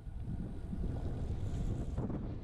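Wind rumbling on the microphone of a camera carried on a moving bicycle, a steady low noise of riding along a road.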